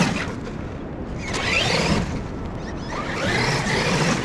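Traxxas X-Maxx 8S RC monster truck's brushless motor whining up in pitch in repeated bursts of throttle, three surges in all, as its paddle tires spin in loose sand. A steady low rumble runs underneath.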